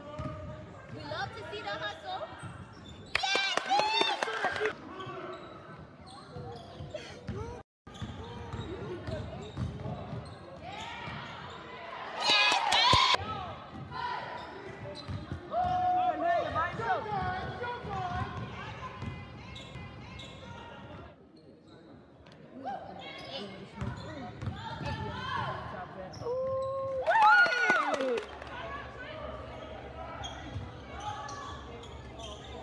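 A basketball being dribbled on a gym floor during a game, with shouting voices of players and spectators in the gymnasium; the sound drops out briefly about eight seconds in.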